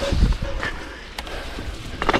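Mountain bike rolling over a dirt trail: tyre and wind noise with a low rumble near the start and a few sharp rattling clicks.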